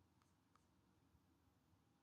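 Near silence: room tone, with two or three very faint ticks.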